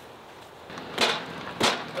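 Two sharp knocks about two-thirds of a second apart, as the wooden temporary power pole is worked down into a hole that is too tight for it.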